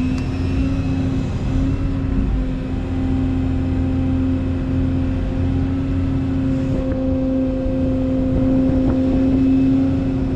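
Excavator's diesel engine running steadily under load as the hydraulic arm curls the bucket through mud, heard from inside the cab as a steady drone that grows a little louder near the end.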